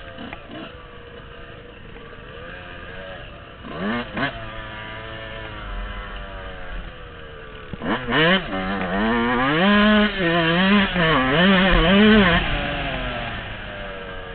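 Yamaha dirt bike engine running under the rider, with a short rev about four seconds in. From about eight seconds in it is on hard throttle, the revs rising and falling repeatedly for several seconds before easing off.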